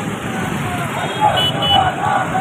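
Busy street noise: road traffic with scattered voices of a gathering crowd, and two brief high tones about a second and a half in.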